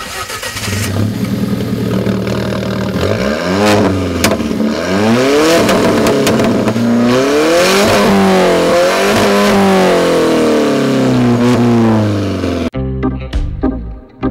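2015 Alfa Romeo 4C's turbocharged four-cylinder engine heard close at the exhaust tip: it idles steadily at first, then is revved repeatedly, its pitch rising and falling with each blip of the throttle. Near the end, the engine sound cuts off and music takes over.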